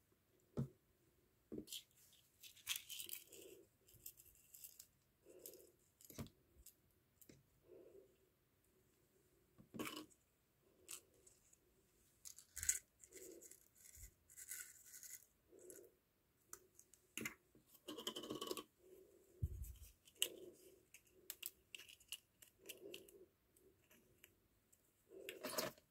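Faint, scattered clicks, taps and rustles of hands handling a small clear plastic cup of pomegranate seeds, with one low bump a little past the middle.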